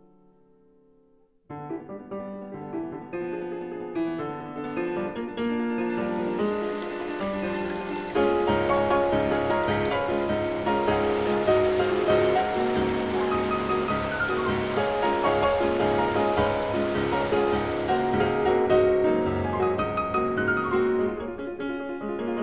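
Gentle piano music, coming in about a second and a half in after a near-silent moment. From about six seconds in until about eighteen seconds, the steady rush of a creek's rapids runs under the piano.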